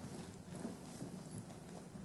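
Faint scattered knocks and footfalls over steady room hiss.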